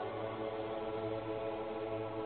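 Soft background music holding a sustained chord, with no beat.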